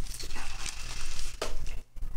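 Paper and gauze crinkling and rustling as gauze is pressed on a fresh shave-biopsy wound, with a single sharp click about one and a half seconds in.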